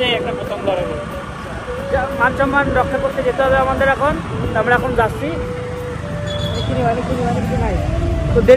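Voices talking over the rush of wind and road noise while riding on a motorbike, the rumble growing louder near the end.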